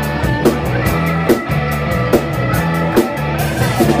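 Live blues rock band playing: electric guitar, bass and drum kit, with a steady drum hit a little under once a second.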